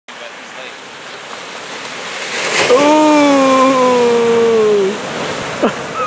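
Shore-break surf washes in and builds to a wave breaking about two and a half seconds in. Over it, a person lets out one long held shout that slowly sinks in pitch for about two seconds.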